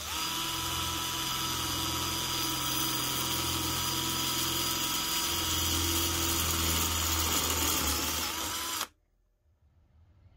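Handheld power drill running with a 5/16-inch bit, drilling through sixteenth-inch-thick aluminum flat bar. The motor's whine holds one steady pitch, wavers slightly near the end, and stops abruptly about nine seconds in.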